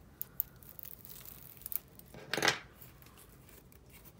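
Plastic shrink wrap being cut and pulled off a photobook album: a couple of small clicks early, soft rustling, then one loud crinkle a little over two seconds in.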